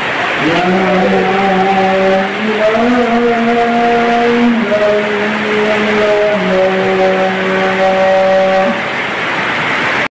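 A man's voice chanting an Islamic prayer call in long, drawn-out notes, each held a couple of seconds and stepping up or down in pitch, over the steady hiss of heavy rain.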